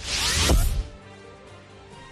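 News-bulletin transition sting: a whoosh with a low boom in the first second, over held music tones that carry on quietly to the end.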